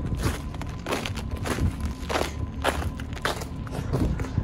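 Footsteps crunching on snow and ice, about two steps a second, over a steady low rumble on the microphone.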